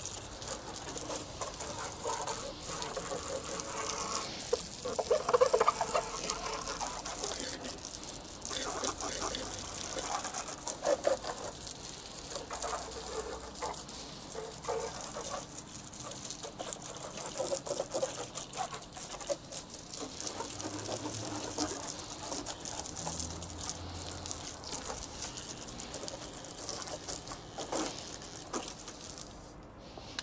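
Water spraying from a hose nozzle and splattering over a motorcycle's bodywork and wheels as it is rinsed, a steady hiss with uneven louder splashes. It stops just before the end.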